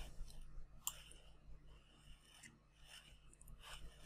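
Near silence: a low steady hum with a few faint clicks, spread about a second apart, from work at a computer.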